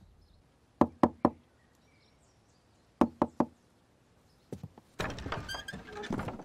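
Knocking on a wooden door: three quick raps, then three more about two seconds later, followed by softer noises near the end.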